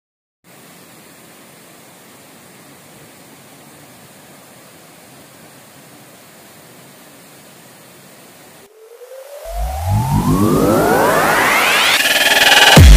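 Steady, even rush of a waterfall. About nine seconds in it cuts off and gives way to a much louder electronic riser, several tones sweeping up in pitch together.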